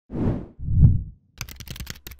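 Logo-intro sound effect: two deep thuds about half a second apart, then a rapid run of clicks.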